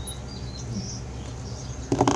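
Steady low background hum with a few faint, high bird chirps, then a sharp knock near the end as metal needle-nose pliers are set down on a wooden tabletop.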